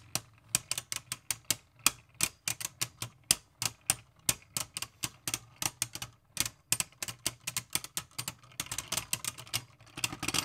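Two spinning Beyblade Burst tops clashing against each other in a plastic stadium: a rapid, irregular run of sharp plastic-and-metal clacks, about five a second, thickening near the end.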